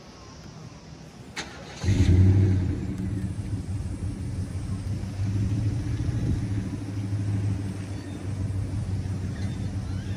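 A vehicle engine starts close by about two seconds in, flaring briefly, then settles into a steady idle.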